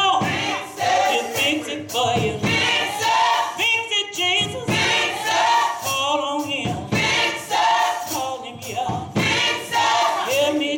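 Gospel choir singing in full voice, with tambourines jingling along in sharp beats.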